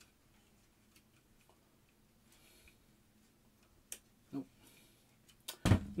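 Faint clicks and light handling noise from a hard-plastic Bat-Pod collectible model being turned over in the hands, with one sharper click a little before four seconds in.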